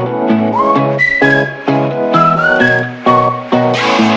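Intro background music: a whistled melody that slides up into its notes, over an instrumental backing of chords and bass.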